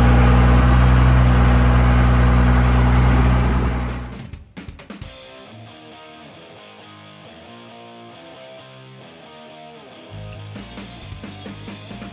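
Vintage Ford pickup's engine running loudly and steadily close to the microphone, cut off about four seconds in. Background music follows, a melodic line joined by drums and bass about ten seconds in.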